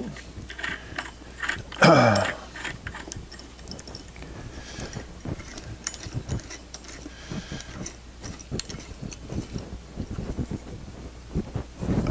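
Small metallic clicks and taps as a steel cutter disc on an aluminium mandrel and bolt is turned over and handled by hand. About two seconds in there is one louder, short sound that falls in pitch.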